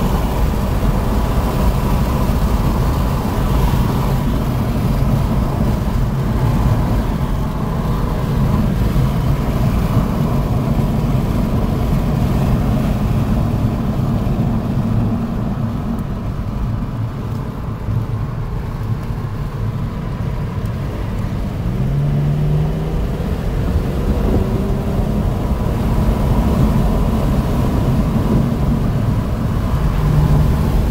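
Car engine and road noise heard from inside the cabin at track speed, steady, easing off a little for a few seconds past the middle and then building again.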